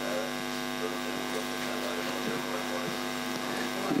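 Steady electrical mains hum from the stage's sound system, a buzzing drone of several even tones that does not change.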